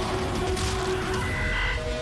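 Horror-trailer sound design: a low rumble with a dense, grainy crackle under held tones. A higher held tone enters for about half a second past the middle.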